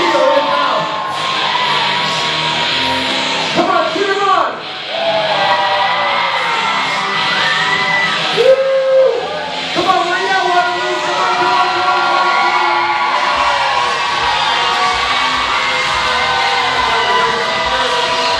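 Loud music with a large crowd yelling and cheering over it, echoing in a big hall.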